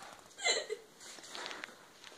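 A child's short, sharp vocal sound, like a hiccup or gasp, about half a second in, followed by a few faint clicks.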